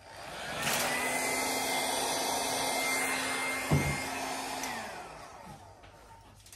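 Hand-held hair dryer switched on, blowing steadily with a motor hum and a high whine for about four seconds, then switched off, its whine falling as it winds down; a short knock about halfway through. In a Dutch pour it is blowing wet acrylic paint across the canvas.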